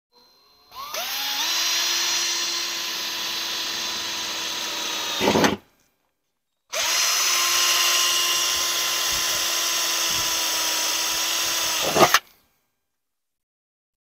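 Cordless drill boring small pilot holes through a car's steel fender. Two runs of a steady whine, each about five seconds long, each spinning up at the start and ending with a short louder burst before it stops.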